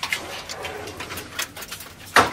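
Wooden boards and planks knocking and clattering as they are handled and stacked, with several separate sharp knocks.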